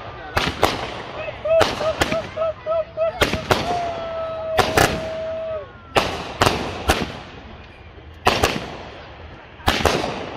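Consumer firework cake firing a volley of aerial shells: sharp bangs, often in quick pairs, roughly every half second to a second and a half. In the first half a wavering whistle-like tone, then a held one that dips at its end, sounds between the bangs.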